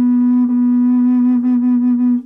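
Teak bass F# side-blow Native American-style flute, holding one long, steady low note with a slight wavering in its second half.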